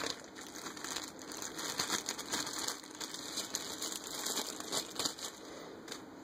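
A thin, clear plastic bag crinkling and crackling in the hands as a bike light is pulled out of it. The crinkling is irregular and dies down near the end.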